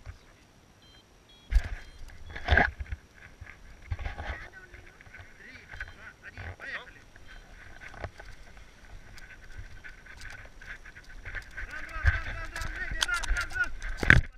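Wind buffeting a close-held action camera's microphone in low gusts, with sharp knocks and rustling of jackets and harness straps against it, about one and a half and two and a half seconds in. Voices come in faintly, and the gusts and handling noise grow louder near the end as the tandem paraglider launches.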